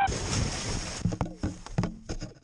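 Plastic sled sliding fast down a snowy hill: a steady rushing hiss of the sled on snow, with several sharp knocks in the second half as it bumps over the snow.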